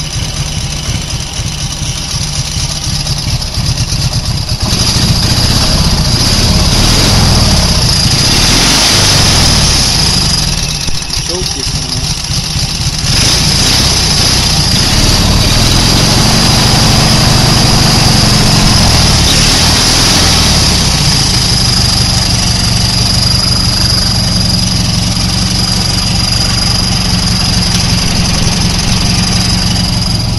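A 16 hp 656 cc twin-cylinder Briggs & Stratton engine running through dual chrome exhaust pipes taken from a police motorcycle. It picks up about four seconds in, eases off briefly around eleven seconds, then runs steadily.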